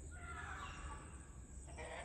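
Faint, distant animal calls: a few wavering pitched cries over quiet background noise.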